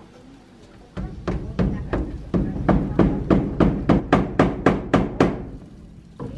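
Hammering on the timber roof framing: about fifteen quick, even blows, roughly three a second, starting about a second in and stopping shortly before the end.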